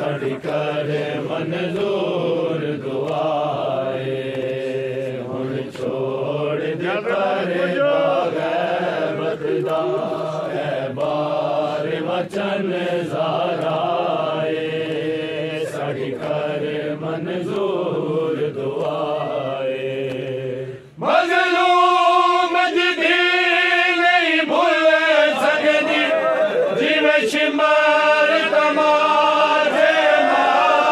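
Men of a qari party chanting a noha (Shia lament) together, with a beat about once a second. About two-thirds of the way through, the sound changes suddenly to a higher, clearer voice with little low end.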